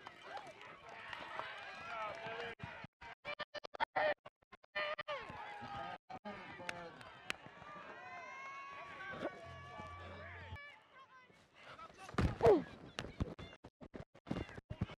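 Overlapping, indistinct voices of players and coaches calling out on an open football field, with a few drawn-out calls and one loud yell near the end.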